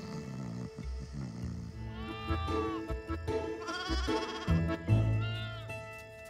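A newborn goat kid bleats three times, each call arching up and down in pitch, over soft film music with a steady held note.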